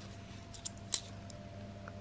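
A few light metallic clicks of 2 euro coins knocking against one another as a stack is handled in gloved fingers, the sharpest just before a second in.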